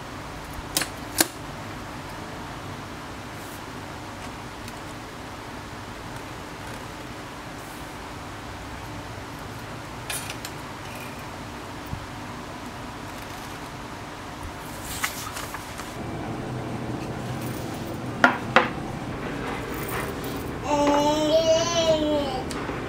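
Sparse sharp clicks and knocks of plastic one-handed bar clamps and a wooden chopping board being handled and clamped to a table, over a steady background hum. Two sharp clicks come close together a few seconds before the end.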